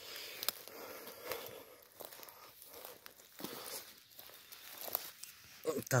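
Footsteps through grass, dry leaves and twigs on a forest floor: a quiet rustling broken by a few small snaps.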